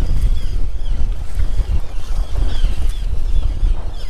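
Wind rumbling on the microphone of a boat out on open water, with a few faint short chirps above the rumble.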